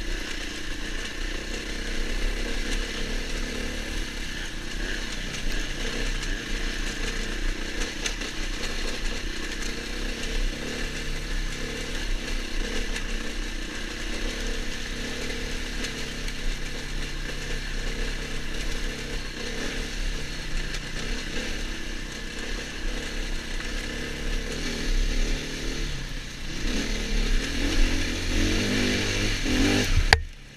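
Enduro dirt bike engine running steadily under way, with wind rumble on the helmet-camera microphone. The engine note climbs over the last few seconds as the bike accelerates.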